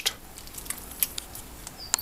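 Wooden spoon stirring a thick stew in a cast-iron Dutch oven, giving scattered light clicks and scrapes over a faint steady background.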